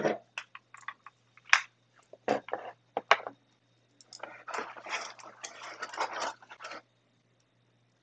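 Unboxing handling noises: a few sharp clicks and knocks as the power brick and its cables are handled, then plastic wrapping crinkling for about three seconds, from about four seconds in.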